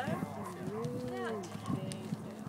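Bystanders' voices over a steady low drone from the distant four-engined Avro Lancaster bomber flying past.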